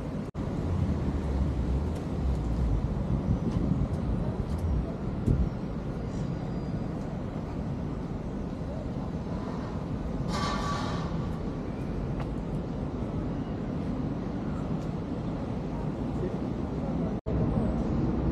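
Steady city traffic noise of an open urban square, a continuous low rumble from passing vehicles. About ten seconds in a short higher-pitched sound cuts through for under a second.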